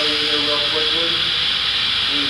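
Steady, loud hiss of compressed air from a pneumatic sheet-metal vacuum lifter's air system, with a man's voice faintly under it.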